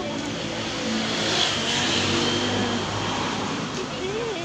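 A car driving past on the adjacent road, its engine and tyre noise swelling about a second in and fading toward the end.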